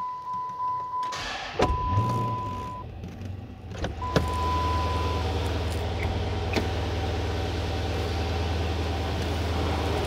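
2011 Dodge Challenger SRT8's 6.1-litre Hemi V8 starting up in the first few seconds, then idling steadily from about four seconds in, heard from inside the cabin. Over the first five seconds a dashboard warning chime sounds in three long tones, with the door-ajar warning lit.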